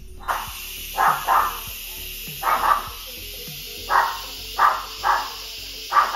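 Instant Pot pressure cooker venting steam on quick release: a steady, loud hiss that starts just after the valve is opened. Over it, a Yorkshire terrier barks sharply about nine times at the noise.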